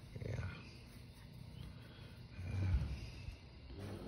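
Domestic cat purring while being stroked on the head: a low rumble that swells twice.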